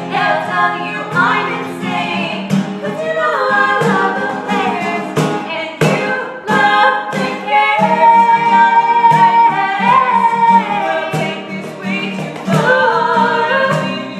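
Two women singing a pop song duet in harmony, accompanied by a strummed acoustic guitar and sharp hand strikes on a cajon. A long held sung note comes in the middle.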